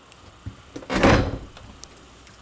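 An interior door in a fifth-wheel trailer moving, heard as a light knock followed about half a second later by one short, loud scraping whoosh about a second in.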